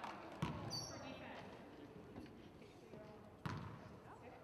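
A basketball bouncing on a hardwood gym floor, two single bounces about three seconds apart, with a short high squeak just after the first.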